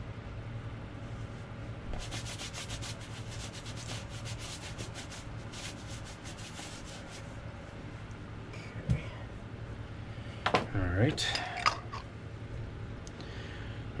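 Horsehair dauber brush rubbing cream into boot leather in a run of quick, repeated strokes. Near the end come a few knocks and handling sounds.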